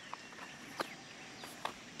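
Faint steady rush of a muddy river still running high after a flood, with a few light clicks over it.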